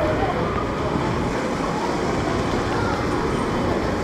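Heavy rain falling, a steady rush of noise, with a short laugh at the start.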